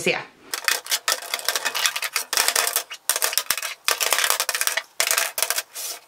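Glass and plastic make-up bottles and jars clinking and clattering as they are set back one after another into a clear acrylic storage box, a quick run of small knocks and clicks.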